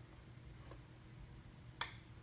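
Two small clicks of metal mounting hardware as a ski kit's axle and spacers are lined up in a dirt bike's front fork: a faint one under a second in and a sharper one near the end, over a steady low hum.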